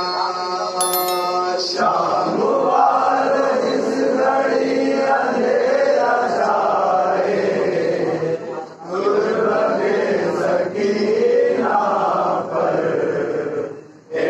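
Men's voices chanting a noha, an Urdu mourning lament, in long sung phrases, with short breaks about eight and a half seconds in and near the end.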